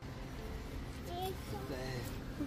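Faint, high-pitched voices, a child's among them, in short snatches from about a second in, over a steady low background rumble.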